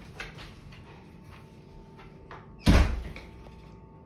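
A door shutting with a single heavy thud about two-thirds of the way through, ringing briefly in the room, after a few faint small knocks.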